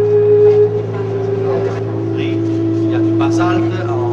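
Indistinct voices of people in a tour group over a steady low hum, with a held tone underneath that drops in pitch in steps about halfway through.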